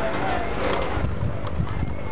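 People's voices calling out, over a dense low background.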